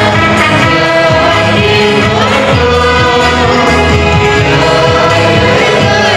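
A group of men and women singing a gospel hymn together into microphones, over instrumental backing with a rhythmic bass line.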